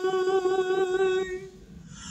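A man singing unaccompanied, holding one long steady note that stops about two-thirds of the way through, followed by a short quiet gap.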